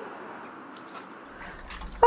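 Water pouring from a plastic watering can onto polymer-filled sandless sandbags, a soft, steady splashing hiss, wetting them so they swell and set in place.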